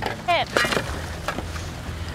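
A person's short startled cries, with a few knocks and a steady low hum underneath.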